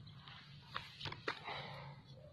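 Faint rustling of dry leaves and twigs, with a few short crackles a little under a second in and a softer rustle near the end.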